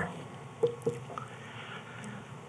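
Quiet room tone through the microphone, with two short, soft clicks about a quarter of a second apart a little over half a second in, and a few fainter ticks after.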